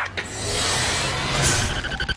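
Trailer sound-design riser: a rushing noise swell with a low rumble under it, building up and peaking about one and a half seconds in.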